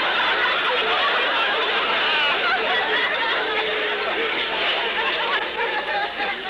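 Studio audience laughing loudly and at length at a joke, many voices together, the laugh easing off near the end. Heard on a narrow-band 1950s radio recording.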